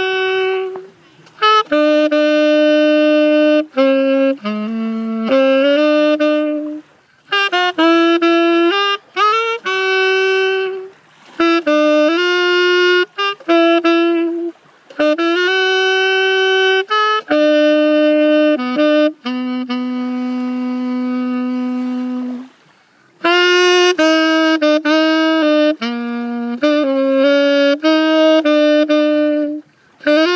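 Solo saxophone playing a melody alone, one note at a time, in phrases of a few seconds with short breaks between them, and a long held low note about two-thirds of the way through.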